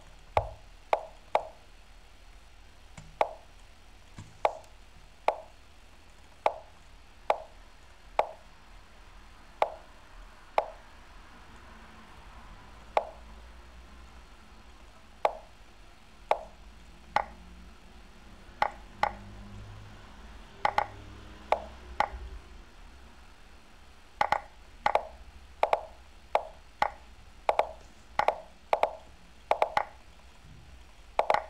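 Lichess's chess-move sound effects: short wooden plops, one for each move played. They come at irregular intervals at first, then in quick runs near the end as both clocks run low in a bullet game.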